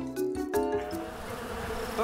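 Stage music of lightly struck notes stops about a second in, giving way to a steady buzzing drone.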